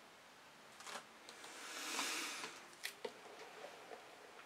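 A stretched canvas being handled and turned on a paint-spattered work surface. A quiet scraping swish swells and fades over about a second, with a few light knocks and clicks around it.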